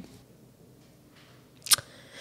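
A quiet pause of room tone, broken about three-quarters of the way through by one brief, sharp click.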